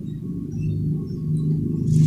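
A steady low hum, getting louder toward the end.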